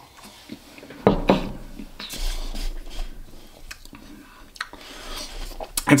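A man sipping beer from a glass and swallowing: two sharp clicks about a second in, then soft breathy mouth sounds and an exhale.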